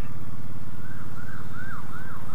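Faint ambulance siren wailing up and down from about a second in, over the steady low running of the Triumph Bobber Black's 1200cc liquid-cooled parallel-twin engine.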